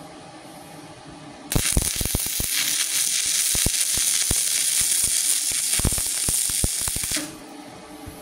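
Stick (MMA) welding arc from a Multipro MMAG 600 G-TY inverter welder at about 190 amps. The arc strikes about a second and a half in and runs for nearly six seconds, a steady hiss full of sharp crackles and pops, then stops suddenly.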